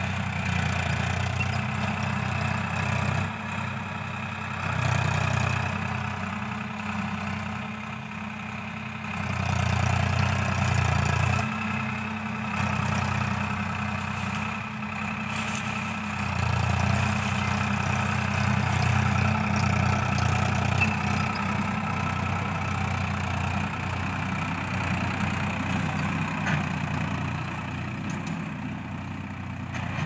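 Farm tractor's diesel engine running steadily while ploughing the field, its sound swelling and falling several times.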